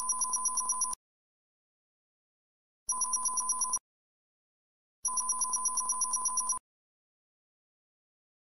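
Electronic beeping sound effect: a rapid run of beeps, about ten a second, in three bursts that each stop abruptly. The first lasts about a second at the start, the second just under a second about three seconds in, and the last a second and a half from about five seconds in.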